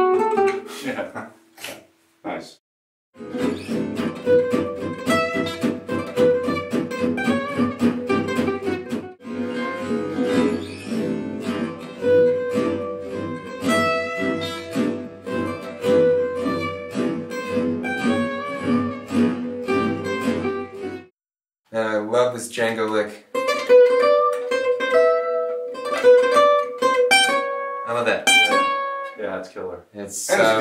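Gypsy jazz acoustic guitars playing a single-note lick over chord accompaniment, replayed in slow motion. The notes are drawn out and ring long, with a short break a little past the middle before a second pass of playing.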